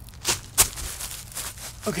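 Hands rubbing and scratching dry, flaky tree bark: a few short, rough scraping strokes, the loudest a little over half a second in.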